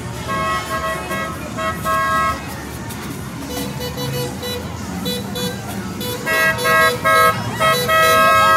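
Car horns honking in short repeated beeps, with a denser, louder run of honks near the end, over crowd and street noise.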